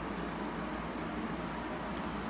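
Steady background hiss of room noise with no distinct events.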